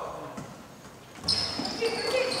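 Indoor basketball play on a hardwood court: a sharp knock a little over a second in, then high squeaks of sneakers on the wood as players scramble for a rebound.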